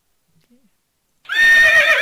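Recorded horse whinny, the horse.mp3 sample, played back through a web page's HTML5 audio player. It starts suddenly and loud about a second and a quarter in, as a high call that wavers and falls.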